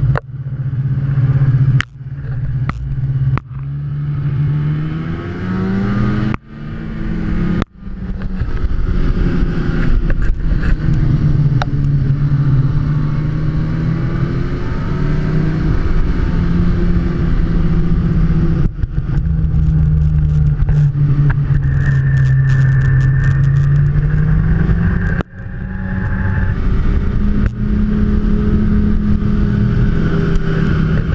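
Snowmobile engine running at speed along the trail, its pitch rising and falling with the throttle. The sound drops off sharply for a moment several times in the first eight seconds and once more about 25 seconds in.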